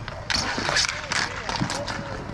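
Roller hockey play: rapid, irregular clicks and clacks of sticks, puck and skate wheels on the court, with players' voices calling.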